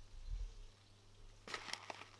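Quiet pause: faint room tone with a steady low hum, a soft low rumble early on and a few faint clicks about one and a half seconds in.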